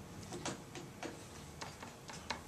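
Stylus tapping and scraping on an interactive whiteboard as a short label is handwritten: a string of light clicks at uneven spacing, several a second.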